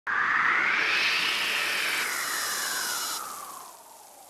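Title-animation whoosh sound effect: a loud rush of noise that sweeps up in pitch and then slowly falls away, with a high hiss that cuts off abruptly about three seconds in, fading near the end.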